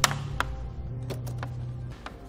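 Metal hooks of a rubber tire-chain adjuster clicking onto a steel cable snow chain as they are hooked on around the wheel, several sharp clicks, over soft background music.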